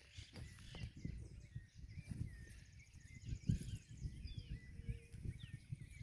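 Quiet rural outdoor ambience: small birds chirping faintly with short repeated calls and a brief high trill midway, over a low irregular rumble.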